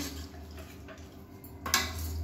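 Metal ladle stirring thick vegetable kuruma in a stainless steel pressure cooker: soft wet stirring of the gravy, then a louder scrape of the ladle against the pot near the end, over a steady low hum.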